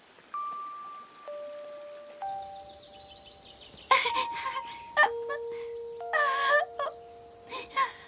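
Slow, soft background music of long held notes. From about four seconds in, a young girl's voice sobs and wails in short bursts over it.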